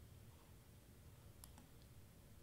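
Near silence with a faint computer mouse click about one and a half seconds in.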